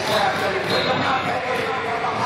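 A step team stomping and stepping on a gymnasium floor, the thumps mixed with shouting voices and crowd noise.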